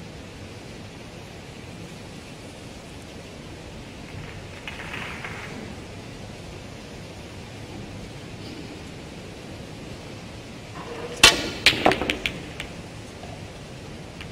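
Snooker balls clicking: a sharp first click of the cue ball striking into the pack of reds near the end, then a quick run of smaller ball-on-ball clicks as the reds scatter. Under it is a steady hiss of arena room tone.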